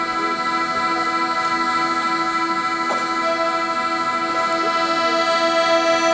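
A large ensemble of accordions and bayans holding a long sustained chord, with a new note joining about three seconds in and the harmony shifting near the end.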